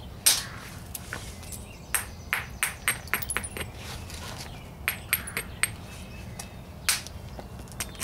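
Quartzite hammerstone striking the edge of a stone core in hard-hammer percussion, trimming the cortex off: a series of sharp, clicking stone-on-stone strikes at irregular intervals, the loudest about a third of a second in and near the end.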